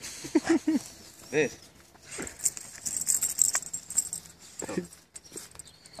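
Pit bull tugging on a leash strap held in its mouth, making short growling sounds.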